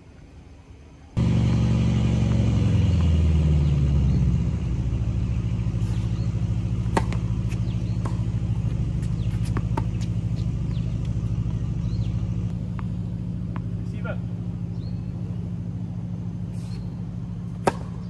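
An engine starts abruptly about a second in, its speed stepping down over a few seconds and then settling into a steady idle. A few sharp tennis-ball strikes from rackets ring out over it.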